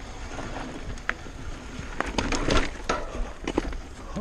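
Mountain bike rolling fast down a dirt trail: a steady rumble of tyres and rushing air, with a run of sharp rattles and knocks from the bike over bumps starting about halfway through.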